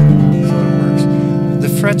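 A chord strummed once on a Steinberger Spirit-style headless electric guitar and left to ring out, fading slowly.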